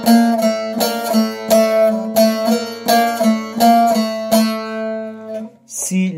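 Bağlama (Turkish long-necked lute) played slowly: about eight plucked notes alternating between la and si over a steady open-string drone. This is the closing phrase of a hicaz piece, heading to its la tonic.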